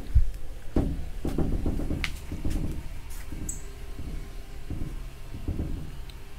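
Microfiber towel rubbing over a truck's freshly compounded clear coat in uneven strokes, with a sharp knock just after the start.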